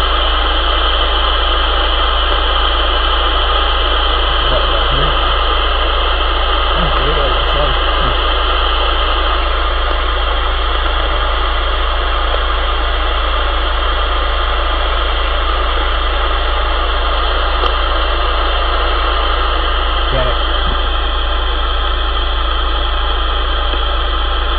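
CB radio receiver with its squelch open on a weak station keying in: a steady, loud rush of static with a low hum and a few steady tones. Faint voice fragments are buried in it, too weak to make out.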